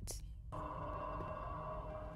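Quiet film-score music: a held, layered drone of steady tones that comes in about half a second in.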